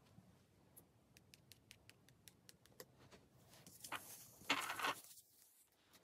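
A quick run of faint light taps as a game piece is moved space by space along a paper game board. Near the end comes a louder brief scraping rustle as the board is slid and turned on the table.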